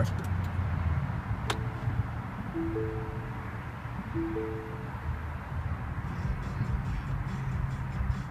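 2014 Lincoln MKZ Hybrid's dashboard chiming as the car is switched on with the push-button start: a click, then a low-then-high two-note chime, heard twice. A steady low hum runs underneath, and no engine is heard starting, since the hybrid powers up silently.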